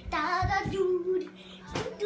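A young girl singing a wordless tune, with a few dull thumps of bare feet on a wooden floor as she dances.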